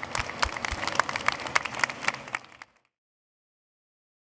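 Audience and panel applauding with many hands clapping, fading out after about two and a half seconds.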